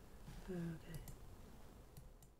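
A short wordless voice sound, a murmur with a falling pitch, about half a second in, followed by a few faint small clicks over low, steady room noise.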